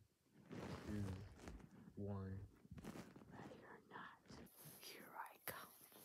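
A person's voice speaking quietly and whispering. A faint high hiss comes in during the last second and a half.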